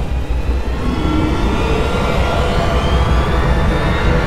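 Cinematic trailer soundtrack: a loud, steady low rumble under a thin tone that slowly rises in pitch.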